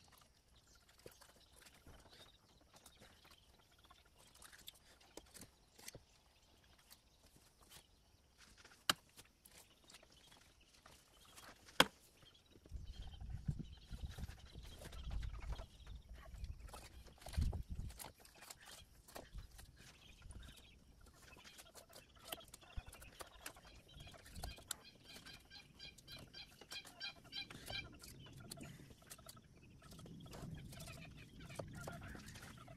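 Faint chickens clucking, with a quick run of high calls near the end, over quiet scattered clicks and scrapes of knife work on a turtle carcass. A low rumble comes in for a few seconds around the middle, and one sharp click stands out just before it.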